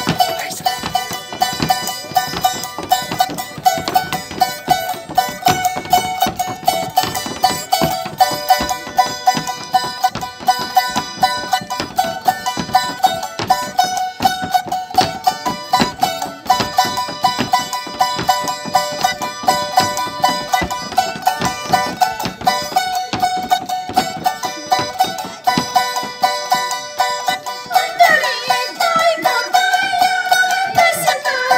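A small Andean stringed instrument strummed quickly in a steady, even rhythm, playing a traditional tune. Near the end a woman starts singing over it.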